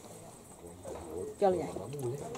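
Speech: a quiet first second, then a voice saying a few words in the second half, with a faint outdoor background underneath.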